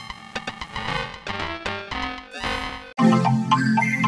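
Logo jingle played with electronic effects: a quieter stretch of wavering, warbling tones, then about three seconds in it jumps abruptly to a louder, fuller version with strong low notes.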